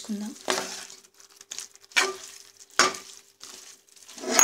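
Spatula stirring chicken pieces and gongura leaves in a cooking pot: a few short scraping strokes, about half a second in, at two seconds and near three seconds, with quiet gaps between.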